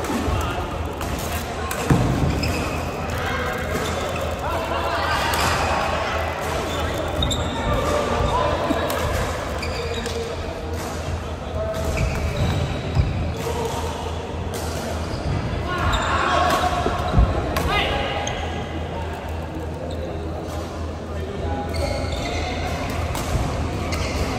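Badminton play on a wooden indoor court: irregular sharp hits of rackets on the shuttlecock and footfalls on the boards, with a few louder thumps, under indistinct voices of players and onlookers.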